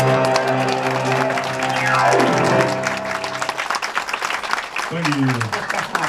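Grand piano ending a song on a held chord, with a quick sweep down the keys about two seconds in, as audience applause builds, then the chord dies away and the clapping thins.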